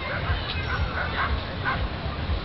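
A small dog yipping several times in quick succession, over a steady low rumble.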